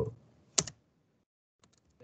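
Computer keyboard keystrokes while typing: two sharp key clicks about half a second in, then a pause and a few faint clicks near the end.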